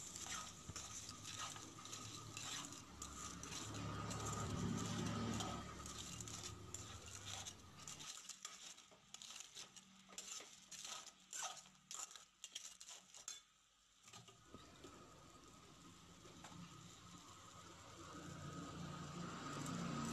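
Faint, irregular clicks and scrapes of a perforated metal ladle stirring crab pieces in masala in an aluminium kadai, thinning out about two-thirds of the way through.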